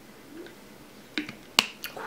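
A faint gulp, then lip smacks after tasting a drink: a few short sharp clicks in the second half, the loudest about a second and a half in.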